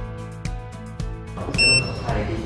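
A short, high-pitched electronic beep about a second and a half in, over background music with a steady beat: the remap interface beeping as its 12-volt power supply is connected.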